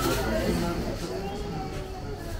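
Low, indistinct talk from several men standing around the table, quieter than the auctioneer's calls, over a steady low background rumble.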